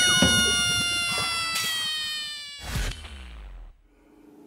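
A long held brass-like note, its pitch sinking slowly as it fades out over about two and a half seconds, followed by a short burst about three seconds in.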